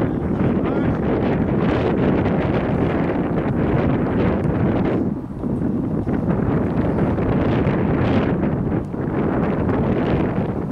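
Wind buffeting the camera's microphone: a loud, steady rumble that eases briefly about five seconds in and again near the end.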